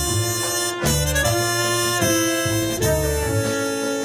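Live jazz quintet playing a tango: saxophone and trumpet play a melody together in long held notes that change about once a second, over double bass and piano.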